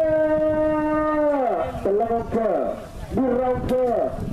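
A man's voice calling in long drawn-out notes: the first is held steady for over a second and then falls away, followed by a few shorter calls that also hold and drop.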